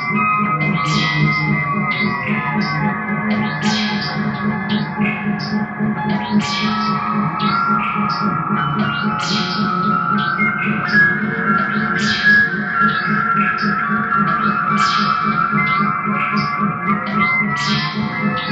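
Amplified electric guitar played with effects: layered notes ring and sustain over a steady low drone, broken by frequent short, sharp, bright attacks.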